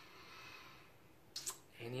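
A quiet pause with faint room hiss, then two small sharp clicks close together about a second and a half in, just before a man starts speaking.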